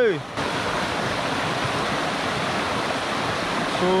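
Steady rush of a shallow, fast-flowing stream running over rocks and riffles.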